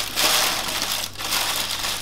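Baking parchment crinkling as hands pull the parcel open, with the tinfoil wrapped around it rustling too. There is a short dip in the crinkling about a second in.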